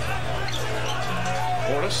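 Basketball game broadcast audio: a ball being dribbled on a hardwood court under faint commentator speech and arena noise, with a steady low hum underneath.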